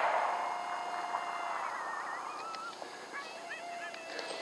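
Coyote yips and a long, flat howl note played from an electronic predator call, with quick wavering yips in the middle and a second held note near the end.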